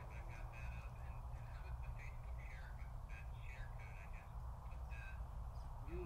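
Birds chirping in short, repeated calls, several a second, over a steady low hum.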